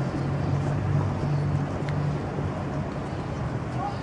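A car engine idling steadily, a low even hum.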